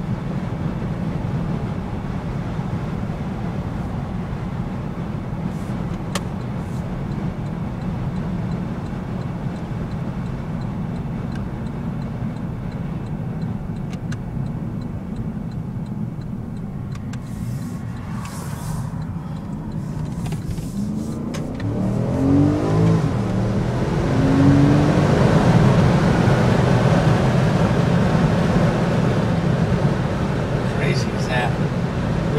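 Porsche Panamera S's 4.8-litre V8 heard from inside the cabin, cruising with a steady low drone and road noise. About twenty seconds in, the engine note climbs in pitch and grows louder as the car accelerates.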